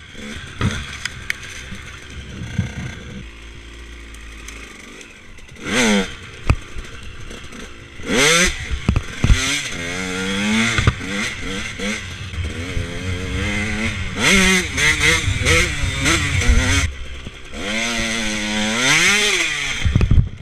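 KTM two-stroke dirt bike engine running low at first, then revving up and down repeatedly on the trail, with knocks and clatter from the bike over rough ground. Right at the end there is a thump as the bike goes down.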